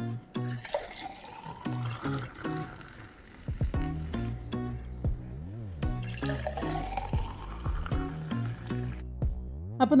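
Background music with a steady beat over the sound of a foamy lemon drink being poured into tall glasses, twice. Each pour rises in pitch as the glass fills.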